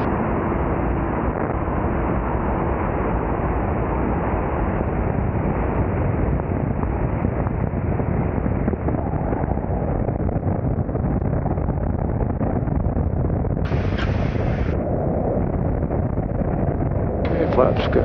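Steady, dull rumble of airflow and the Adam A500's twin Continental TSIO-550 piston engines throttled back to idle as the aircraft flares and lands, with a short hissier stretch about fourteen seconds in.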